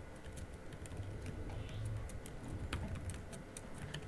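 Light, irregular keystrokes on a laptop keyboard, over a low steady room hum.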